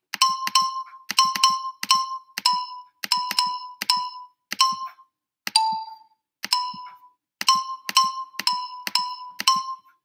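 Digital xylophone notes from a browser app, the highest bars clicked over and over: about eighteen short, high, bell-like notes in an uneven rhythm, almost all on the same top pitch, with one slightly lower note about halfway through.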